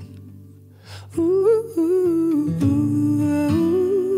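Song: a male singer's wordless "ooh" line, sliding between notes, over soft guitar accompaniment. It comes in about a second in, after a brief quieter moment.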